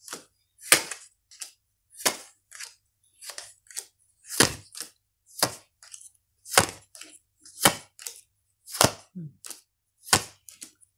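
A deck of tarot cards being shuffled by hand, each chunk of cards landing with a sharp slap about once a second, with softer card patters between.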